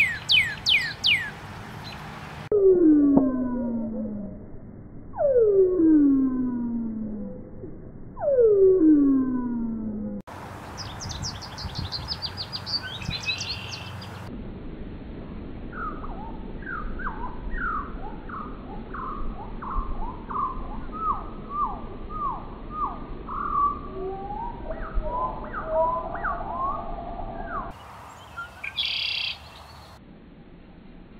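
Songbirds singing in a series of separate recordings cut one after another. First come quick falling whistles, then three long falling whistles, a fast high trill about ten seconds in, a long run of short varied notes, and a last brief burst of high song near the end.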